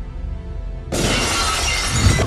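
Glass-shattering sound effect: a sudden loud crash of breaking glass about a second in, laid over background music.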